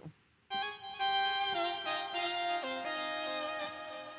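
GarageBand's Retro Space Lead software synthesizer playing a few sustained notes that step down in pitch, starting about half a second in and slowly fading, with a bright, reedy tone.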